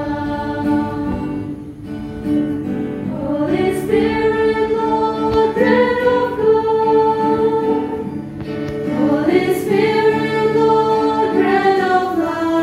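A choir singing a slow hymn in long held notes, with short breaks for breath a couple of times.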